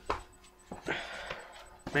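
Handling of a cardboard box: a few light knocks and a short rustle as the box is picked up and moved.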